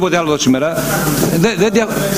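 Men talking in speech that cannot be made out.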